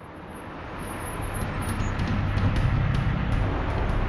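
Steady rumble of road traffic and vehicle engines, fading in over about the first second.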